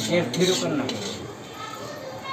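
A metal spatula stirring and scraping semolina halwa around a large metal kadai, with a few clinks against the pan near the start. The semolina is being roasted in ghee.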